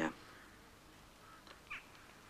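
A single short, faint bird call, like a crow's caw, shortly before the end, over otherwise quiet outdoor ambience.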